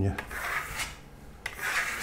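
Steel Venetian trowel scraping across a thin coat of matte pearlescent decorative paint on a sample board, spreading and smoothing the excess in two sweeping strokes, the second one louder.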